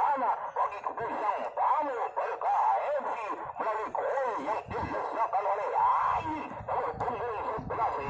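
Several voices talking and calling out over one another without clear words, sounding thin and distant.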